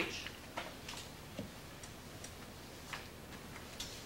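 Quiet classroom room tone with about five faint, irregularly spaced clicks.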